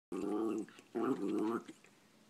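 Cairn terrier 'talking': two drawn-out vocal sounds of about half a second each, steady in pitch, with a short pause between them.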